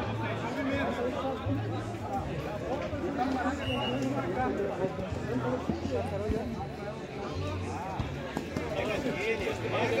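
Indistinct voices of several football players calling out to each other on the pitch, overlapping one another, over a low hum that comes and goes.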